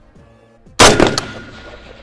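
A single rifle shot from a Daewoo K1, a sharp crack about 0.8 seconds in, with its echo trailing off over the next second.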